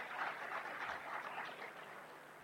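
Audience applauding, the clapping slowly dying down toward the end.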